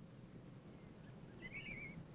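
Faint background hiss with a short warbling bird call about one and a half seconds in.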